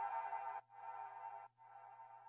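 Faint electronic background music: soft sustained chords that die away about a second and a half in.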